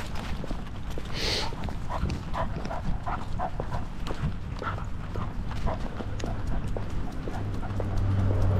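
A dog walking, heard from a camera mounted on its back: a quick, irregular run of small clicks and knocks from its steps and its harness gear, over a low rumble of movement on the microphone.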